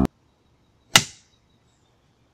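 A film clapperboard's clapstick snapping shut once: a single sharp wooden clack about a second in that dies away quickly.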